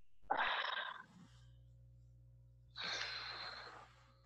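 A man breathing out hard twice, about two and a half seconds apart, with the effort of a deep shoulder and pec stretch.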